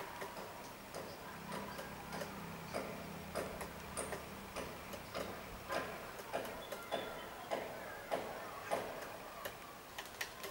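Black-rumped flameback woodpecker pecking at a tree branch: sharp, irregular wooden taps, about two a second.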